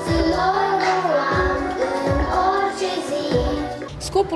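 A group of children singing a song together into handheld microphones over musical accompaniment.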